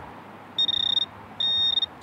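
Handheld metal-detecting pinpointer probe beeping twice: two steady, high electronic tones, each about half a second long, the first about half a second in and the second about a second later.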